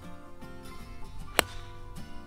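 Light acoustic guitar background music, cut by one sharp crack about one and a half seconds in: a golf club striking the ball on a tee shot.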